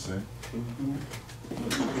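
Soft, low murmured voice sounds in a meeting room: brief hum-like utterances between speakers, over a steady low electrical hum.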